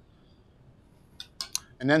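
Near silence for about a second, then a few quick clinks of a metal spoon against a stainless steel saucepan.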